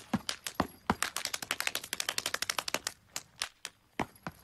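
A rapid series of sharp clicks or taps. It starts at a few a second, turns into a fast dense rattle about a second in, and thins out near the end.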